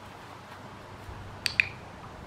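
Dog-training clicker pressed and released: two sharp clicks in quick succession about a second and a half in, the marker signal that the puppy has earned a kibble reward.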